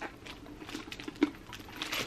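Handling noise of a PVC jelly handbag and its strap being fiddled shut: faint rubbing and light taps, with one sharper click just after a second in.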